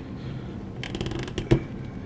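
A plastic action figure being handled as its arm is moved at the joint: a quick run of small clicks about a second in, then one sharper click.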